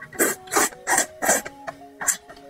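A person slurping thick noodles, four quick wet slurps in the first second and a half, over soft background music with held notes.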